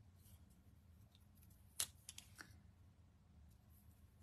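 Near silence with a few faint light ticks of a pointed craft tool (a Take Your Pick) and a small paper letter on cardstock as the letter is nudged into place, the clearest a little under two seconds in.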